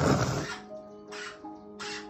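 A pet white cockatoo gives one short, loud call at the very start, over steady music from a television film soundtrack.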